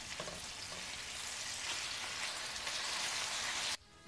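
Chicken breasts searing in hot oil in a stainless steel frying pan, a steady sizzle that cuts off abruptly just before the end.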